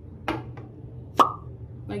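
Two short, sharp clicks, the second louder with a brief pitched ring, over a steady low hum.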